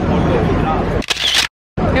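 Street crowd chatter, then about a second in a short camera shutter click as a photo is taken, followed by a brief dead-silent gap where the audio cuts.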